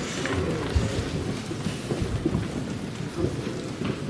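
Many people praying aloud at once: a low, overlapping murmur of voices with rumbling and small knocks, no single voice standing out.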